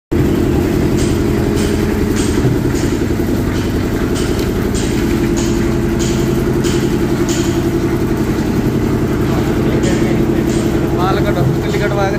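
Hand-lever PU resin injection pump being worked, each stroke a short sharp hiss-click about every 0.6 s with a pause of about two seconds past the middle. A steady loud machine hum runs underneath throughout.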